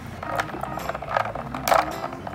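Small plastic dolls being moved by hand in a bowl of water, knocking against each other and the bowl with a few light clicks and knocks.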